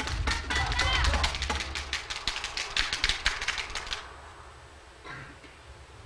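Audience applause after a scored point, many hands clapping with a voice or two calling out early on; the applause cuts off suddenly about four seconds in, leaving a low hiss.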